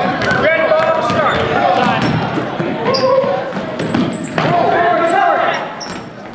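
Basketball bouncing on a hardwood gym floor, a series of irregular thuds, over background voices in an echoing gym.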